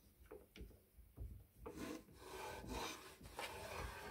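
Stanley No. 55 combination plane: a few light clicks and knocks as the metal plane is handled and set on the board, then, about two seconds in, a long steady stroke of the cutter taking a shaving along a wooden board.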